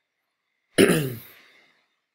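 A man clearing his throat once, sharply, about a second in, fading over about a second.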